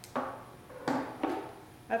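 Three short knocks and clunks of a manual sealant applicator gun and its parts being handled and set against a wooden bench.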